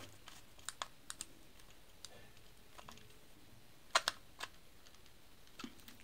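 Small scattered clicks and taps of a screwdriver working the terminal screw of a plastic DP switch, with a sharper pair of clicks about four seconds in.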